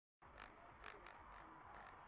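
Faint cabin noise inside a car driving on a highway: a low, steady road rumble with several brief, light creaks from the interior trim or dashcam mount.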